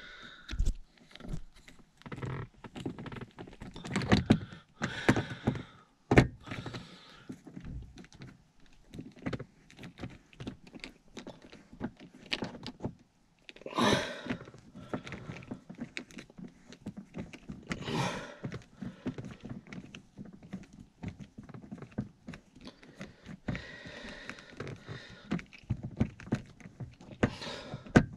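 Torx screwdriver working the screw of a car sun visor's plastic mounting bracket: irregular small clicks, knocks and scrapes of the driver and trim, with a sharper click about six seconds in and a couple of louder scrapes later on.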